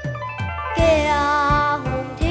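A child singing a held note with a wavering pitch over instrumental backing music with drum beats.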